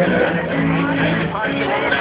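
Loud funfair din around a swinging pendulum thrill ride: music playing over loudspeakers with held low notes, mixed with voices.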